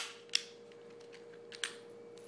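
Sharp metal clicks from a Taurus 740 Slim pistol as it is handled during takedown, with the slide let go while the takedown levers are held down. One loud click at the start, another about a third of a second later, and a softer one about a second and a half in.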